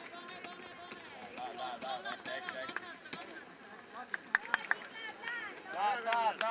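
Spectators calling out to runners passing on the track, with a quick run of sharp claps about four seconds in.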